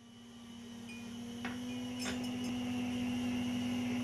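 Room tone with a steady low electrical hum, fading in. There are a few faint clicks about halfway through.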